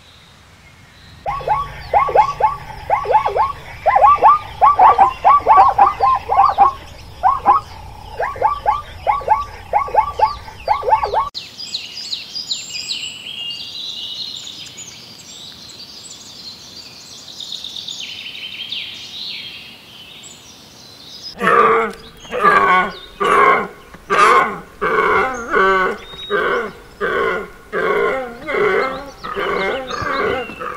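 Animal and bird calls in three stretches: first many quick, repeated falling calls over a low hum, then high twittering birdsong, then a loud series of pulsed, grunting calls about one a second.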